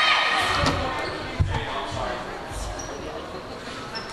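The tail of a loud shouted team cheer cutting off at the start, then voices echoing in a gymnasium. A few low thuds and one sharp smack about a second and a half in come from a volleyball bouncing on the hardwood floor.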